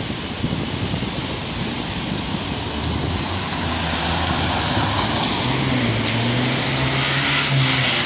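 Road traffic on wet asphalt: a steady hiss of tyres on the wet road, with a vehicle engine's hum coming in about halfway through and growing louder toward the end.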